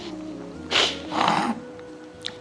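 A man crying: a sharp sniff a little under a second in, then a short shaky sobbing breath, over a soft, steady background music drone.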